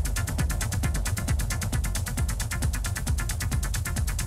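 Techno track mixed by a DJ: a fast, steady run of ticking hi-hats, about eight to nine a second, over a deep bass line.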